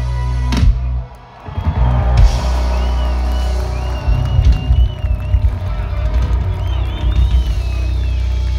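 A live rock band playing through a festival PA, heard from the crowd: heavy bass and drums carry the sound. The music drops out briefly about a second in, then the full band comes back in.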